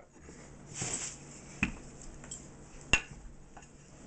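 Soft rustle of a rolled-out pie-dough sheet being lifted and rolled up off a floured tile counter, with two light knocks on the counter beside a glass pie dish, the second and sharper one near three seconds in.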